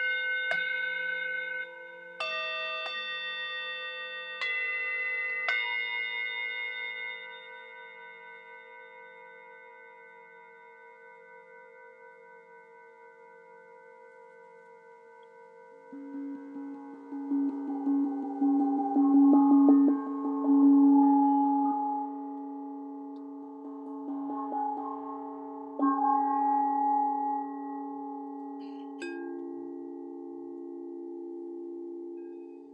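Singing bowls struck several times in the first few seconds, each note ringing on and slowly fading together. From about 16 s a lower, louder bowl tone swells in with a wavering pulse, and a few more strikes ring out near the end.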